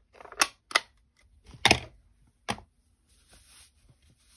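About five sharp clicks and taps of craft supplies being handled and set down on a desk, the loudest a little under halfway through.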